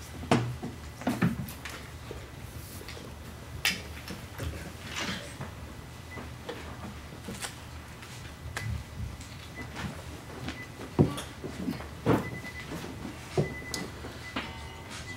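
Scattered knocks, bumps and clicks of an acoustic guitar being lifted and slung on its strap, with the sharpest knocks near the start and about three-quarters of the way through.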